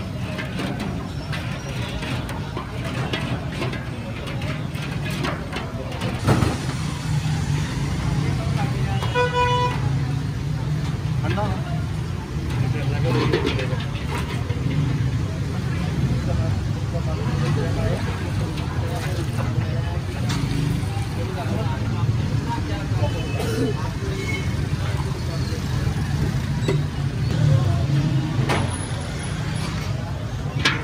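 Busy street-side ambience: a steady low rumble with background voices, and a vehicle horn sounding briefly about nine seconds in, with a fainter toot later. Occasional light clinks.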